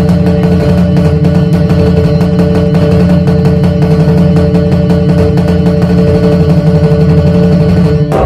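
Dhumal-style 'sher taal' (tiger tone) music: an Indian keyed banjo strummed fast and steadily over a Roland octapad drum pattern with heavy bass.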